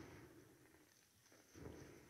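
Near silence, with two faint, brief soft sounds: one at the very start and one about a second and a half in.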